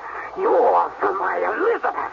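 A person's voice with pitch sliding up and down, carrying on with short breaks but giving no clear words.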